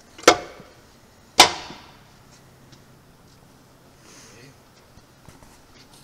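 Two metallic bangs about a second apart from the sheet-metal belt-drive cover of a Hardinge TM mill being handled, the second louder and ringing on briefly.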